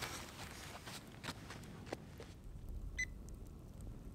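Faint footsteps and rustling on dry sandy ground, then about three seconds in a single short, high beep from a handheld infrared thermometer gun taking a temperature reading.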